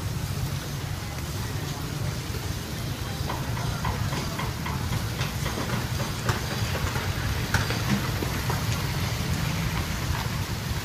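Food grilling over charcoal: a steady hiss with scattered small crackles and pops that grow more frequent after a few seconds, over a steady low rumble.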